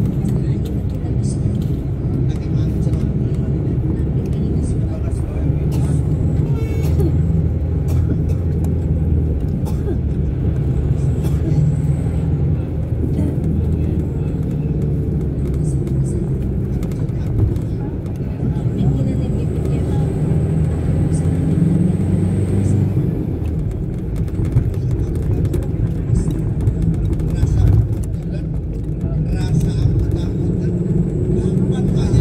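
Steady low engine drone and road noise heard from inside a moving vehicle.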